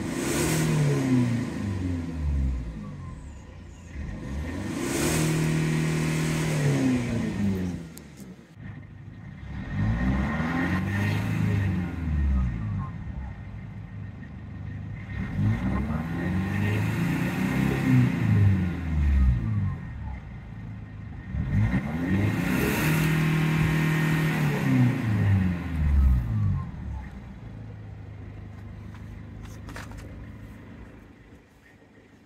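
Mercedes-Benz CDI diesel engine free-revved five times while parked, each rev rising in pitch and falling back, then settling to idle near the end.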